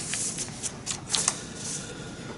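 Loose sheets of printer paper being handled and leafed through on a lectern: a few short papery rustles and flicks.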